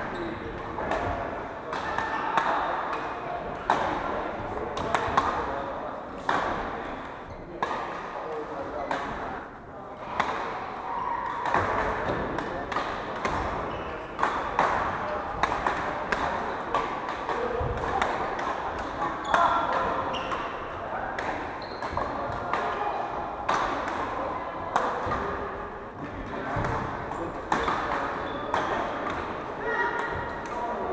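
Badminton rackets hitting shuttlecocks on several courts: sharp hits at irregular intervals, over a background of indistinct voices.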